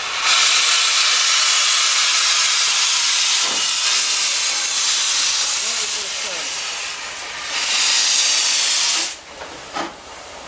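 Metropolitan Railway No. 1, an E class 0-4-4T steam tank engine, hissing loudly as steam vents from its open cylinder drain cocks while it moves slowly along. The hiss eases briefly twice and cuts off about nine seconds in.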